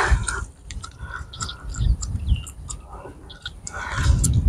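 Wind buffeting the phone's microphone in uneven low gusts, with faint short chirps and scattered clicks.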